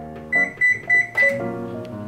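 Microwave oven beeping four times in quick succession, signalling that its cooking time is up, over light guitar and piano background music.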